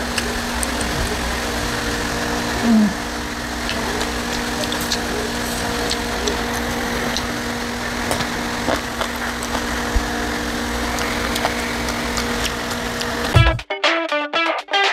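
A steady mechanical hum with faint clicks of someone eating with her fingers, and a short 'hmm' while chewing about three seconds in. Strummed guitar music starts suddenly near the end.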